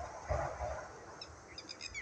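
Small birds chirping: a quick run of short, high chirps in the second half, over a soft low outdoor rumble.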